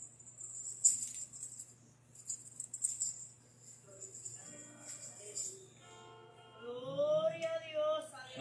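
Tambourine-like jingling in light shaken bursts, then acoustic guitar notes from about four seconds in and a held sung note swelling near the end as a gospel song gets under way.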